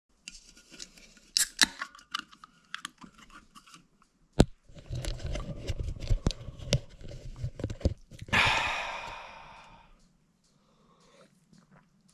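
Clicks and rubbing from handling, then about eight seconds in an aluminium beer can is cracked open with a sudden hiss of escaping fizz that fades over a second or so.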